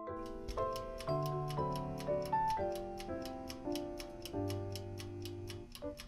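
Toaster timer ticking steadily, about four ticks a second, while the bread toasts, over light background music with a moving melody.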